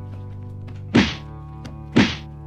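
Two heavy thunks of blows landing, about a second apart, over steady background music.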